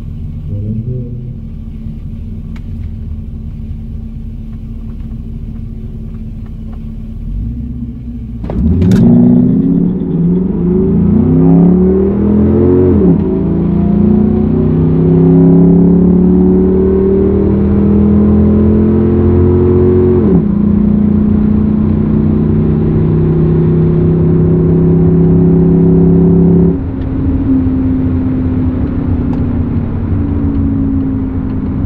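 Holden VZ SS Ute's 5.7-litre V8 heard from inside the cabin, idling, then launching about eight seconds in for a full-throttle drag-strip run, revs climbing with two upshifts, with a sharp click just after the launch. Near the end the driver lifts off and the engine note drops and falls away.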